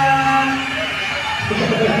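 Indistinct voices with background music. A held pitched note ends about half a second in, and voices follow near the end.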